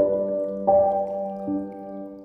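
Ambient piano music: soft notes struck about every three-quarters of a second, each ringing on over a held low note.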